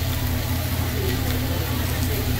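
Vegetables and rice frying on a steel teppanyaki griddle: an even sizzling hiss over a constant low rumble, with faint voices.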